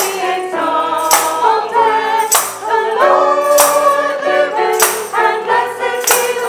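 Small church choir of mixed voices singing a hymn, over a sharp percussive beat that strikes about every second and a quarter.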